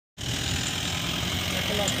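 A motor vehicle's engine idling steadily, with voices in the background.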